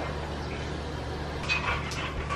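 Water running steadily into a bowl of dry instant ramen noodles, with a few short knocks near the end.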